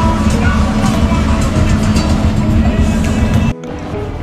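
Background music over the loud rumble of wind and motor noise from a motorboat under way. The noise cuts off suddenly about three and a half seconds in, leaving the music quieter.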